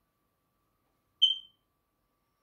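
A single short, high-pitched electronic beep about a second in, starting sharply and fading away quickly.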